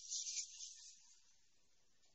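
Faint sizzling of mushrooms and onions frying in a pan, fading away within the first second, then near silence.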